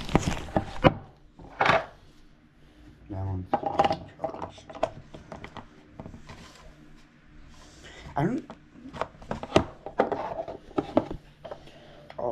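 Handling noise from a camera being picked up, moved and set down: a quick run of clicks and knocks in the first second, another knock shortly after, then scattered small taps and rubbing, with a few mumbled words.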